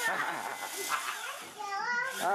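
Several people's voices talking over one another, with a short lull about one and a half seconds in.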